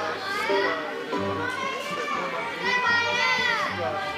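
Children's voices chattering and calling, one call gliding down in pitch about three seconds in, with music playing underneath.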